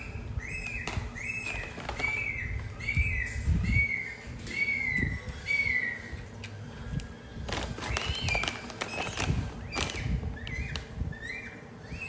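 Short, high chirping calls repeated about two a second, each one arched, the series slowly falling in pitch; they stop about six seconds in and come back less regularly near the end. Low rustling and handling noise runs underneath.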